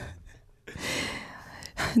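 A person drawing in an audible breath for about a second, a soft airy inhale just before speaking again.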